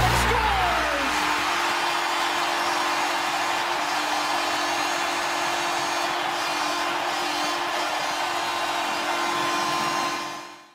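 A steady, even rushing noise, like static or a small motor's hiss, with a low steady hum beneath it.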